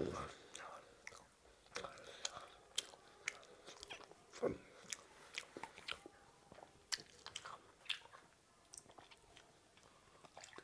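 A child chewing a mouthful of panta (water-soaked) rice close to a clip-on microphone: soft, wet chewing with many scattered lip smacks and mouth clicks.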